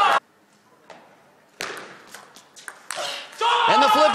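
Table tennis ball clicking off bats and table in a short rally, a handful of sharp hits with quiet between them. Loud voices break in near the end as the point ends.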